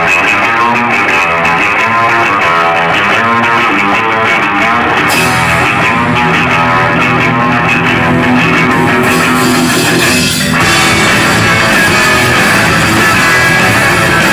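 Live rock band playing loud, with electric guitars, bass guitar and drum kit. The sound grows brighter about five seconds in, drops briefly about ten seconds in, then the full band comes back in.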